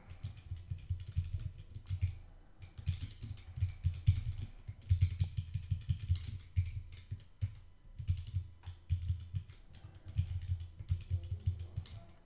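Typing on a computer keyboard: quick runs of keystrokes, each a low thud with a click, broken by brief pauses.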